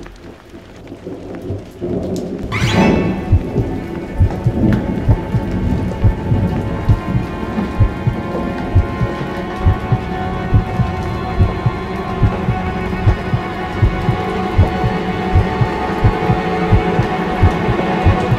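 Horror film score: a sudden loud swell and hit about three seconds in, then sustained, ominous drone tones over a regular low thumping pulse with a rumbling, rain-like noise bed.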